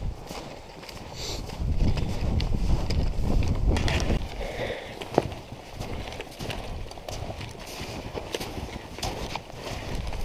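Boots crunching through deep snow in a steady walking rhythm, several people's steps overlapping, with a low rumble of movement on the microphone. A single sharp click stands out about five seconds in.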